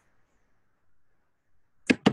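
Near silence, then a brief sharp noise near the end.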